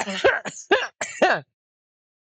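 A person laughing in short bursts, stopping abruptly about one and a half seconds in.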